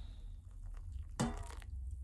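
Hot water being poured from a stainless-steel kettle into a glass measuring jug of dried roots: a faint trickle and splash. About a second in there is a short, louder sound.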